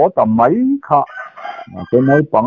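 Speech, broken for about a second in the middle by a rooster crowing, fainter than the voice and in the background.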